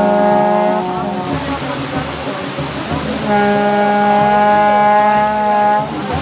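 A blown horn sounding two long, steady notes at the same pitch. The first note carries on from before and fades about a second in. The second starts at about three seconds and is held for about two and a half seconds, cutting off just before the end.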